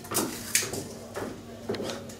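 Rainbow plastic Slinky flopping down concrete stair steps, landing with two light plastic clacks in the first half-second or so.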